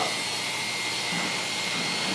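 Electric barber clippers running steadily as hair is trimmed, a constant motor noise with a thin high whine.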